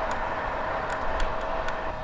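Wind rushing over the microphone and tyre noise from an electric road bike riding at speed, with a faint steady whine from its mid-drive assist motor running in boost mode.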